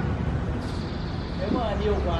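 A steady low rumble, with a voice speaking faintly from about one and a half seconds in.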